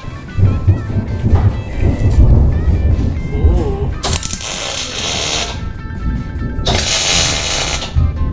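MIG welder tack-welding sheet steel: two crackling weld bursts, each about a second and a half long, the first about four seconds in and the second near the end. Background music plays throughout, with laughter at the start.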